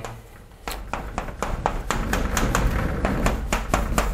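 Chalk tapping against a chalkboard as short tick marks are drawn in quick succession, a rapid series of sharp taps about four or five a second starting about half a second in.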